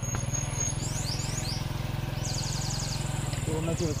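Small motorcycle engine running steadily at low revs, a constant low pulsing drone.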